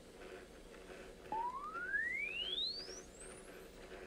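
A single pure electronic tone that starts abruptly about a second in and sweeps steadily upward in pitch, from a mid tone to very high, over about two and a half seconds, against faint hiss.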